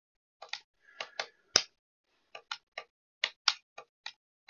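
Computer keyboard being typed on: about a dozen separate keystrokes in uneven clusters, with one sharper key about a second and a half in.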